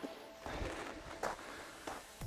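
Faint footsteps on a gravel path, a few soft crunching steps.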